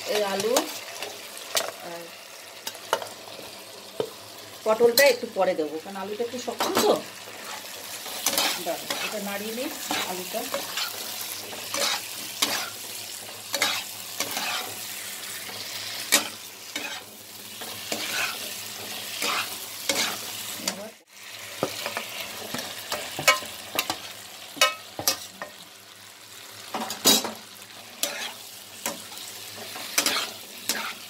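Metal spatula stirring and scraping potatoes and pointed gourd in a nonstick kadai, with a steady frying sizzle from the spiced oil and frequent sharp scrapes and clicks. The sound breaks off briefly about two-thirds of the way through.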